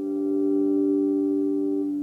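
A chord on a solid-body electric guitar ringing out through a small combo amp, held and swelling slightly in loudness before fading near the end.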